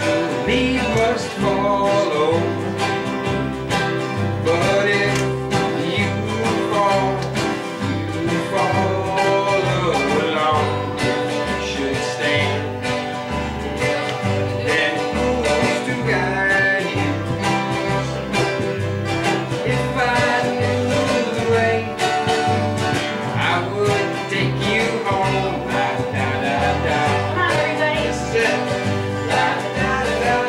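A small acoustic band playing a slow country-folk song on strummed acoustic guitars and bass, the bass keeping a steady pulse of low notes throughout.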